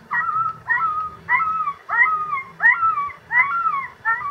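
Recorded distress cries of a hurt puppy from a smartphone predator-call app, played through an amplifier and horn loudspeaker: a steady run of short, high yelping whimpers, about one every half second, each rising and then falling in pitch. It is a coyote lure that imitates an injured dog.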